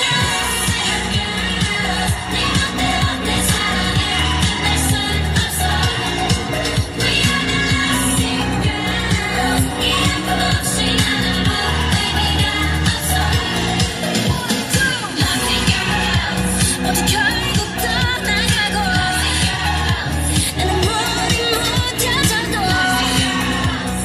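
K-pop dance track with sung vocals over a steady bass beat, played through a portable loudspeaker.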